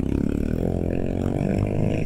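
Motorcycle engine running as the bike rolls slowly through traffic, its pitch rising slightly.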